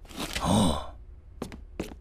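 A cartoon man's long breathy sigh, its pitch rising then falling, lasting just under a second. It is followed by two short, sharp clicks.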